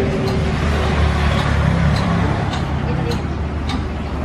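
Steady low background rumble, with indistinct voices and a few light ticks.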